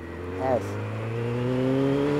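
Motorcycle engine accelerating under an opened throttle, its pitch and level rising steadily over about a second and a half.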